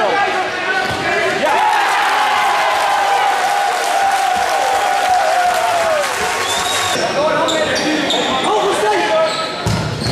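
Futsal being played in a sports hall: ball kicks and bounces echoing off the hard floor, mixed with players and bench members shouting.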